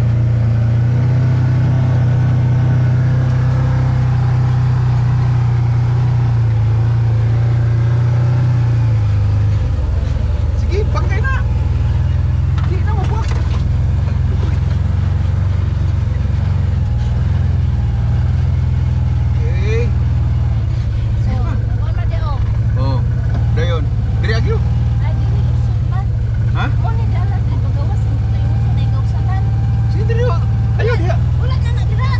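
Side-by-side utility vehicle's engine running steadily as it drives along a trail, a loud low drone that drops a little in pitch about nine seconds in.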